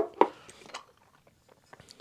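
Aluminium Bialetti moka pot parts being handled: a sharp knock as the bottom chamber is set down on a wooden tabletop, a second knock just after, then a few faint metal clinks.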